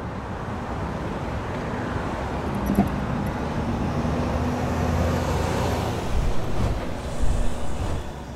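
Urban traffic ambience: a steady low rumble of road traffic with a faint hum, and a few low thumps in the second half.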